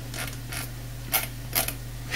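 Four short clicks, roughly half a second apart, over a steady low hum.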